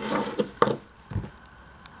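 Handling noise from small objects, a plastic cup and a plastic tool canister being moved about on a table: a few light knocks and rustles with one sharp click in the first half, and a soft thump a little after a second in.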